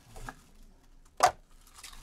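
Trading-card handling with one short, sharp snap about a second in, as a card in a plastic holder is picked up by gloved hands.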